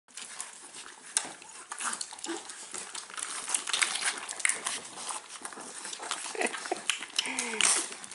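Staffordshire Bull Terrier puppies suckling from their mother: many small wet smacks and clicks, with paws scrabbling on tile. A short low falling vocal sound comes near the end.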